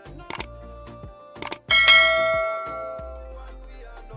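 Subscribe-button animation sound effects: short mouse clicks twice, then a bright bell chime that rings out and fades over a second or so, over background music.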